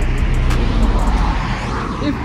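Road traffic noise: a vehicle passing on the road, an even rushing sound over a low rumble.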